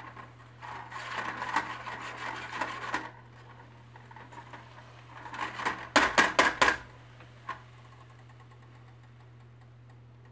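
Spatula stirring and scraping sautéing mushrooms in a stainless steel pot, then a quick run of sharp knocks from the pot and spatula about six seconds in.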